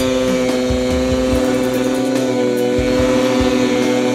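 Snowmobile engine held at steady high revs while the sled carves through deep powder, its pitch barely changing.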